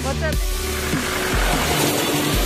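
Background music: a pop or hip-hop style track with a heavy bass line and a sung vocal.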